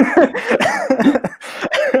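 A person laughing hard in short, breathy bursts, with 'oh my' spoken near the start.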